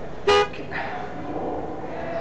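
A single short car horn toot about a quarter of a second in.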